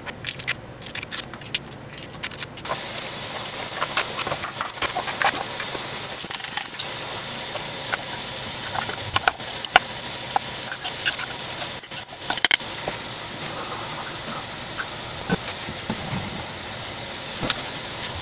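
Kitchen food-prep handling sounds: scattered taps on a plastic cutting board, then a spoon clinking and scraping in a stainless steel mixing bowl as a cream-cheese filling is stirred and spooned out. A steady hiss comes in suddenly about three seconds in and stays under the clinks.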